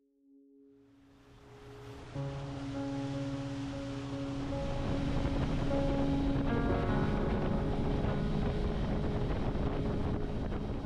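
Soft sustained music chords fading in over the steady rush of water and wind noise from a motorboat under way. The sound rises out of near silence over the first two seconds, then holds steady, with the chords changing twice.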